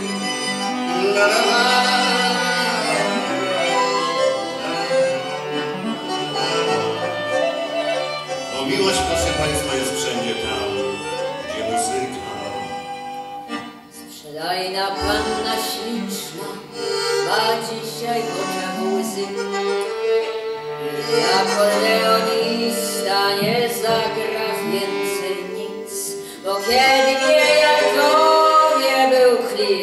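Violin and accordion playing an instrumental passage of a chanson together, with no singing.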